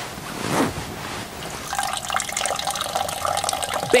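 A man urinating into a toilet: a stream of liquid splashing into the bowl's water, settling into a steady pour about halfway through.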